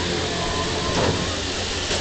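Railway locomotive running, a steady low rumble, with a single brief knock about a second in.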